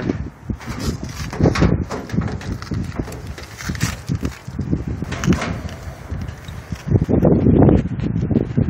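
Irregular knocks and clatter of hands and camera handling against the metal cabinet of an outdoor air-conditioning condenser unit, with wind buffeting the microphone in the last second or so.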